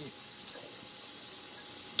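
Steady, even background hiss from the recording's noise floor, with no distinct sound event.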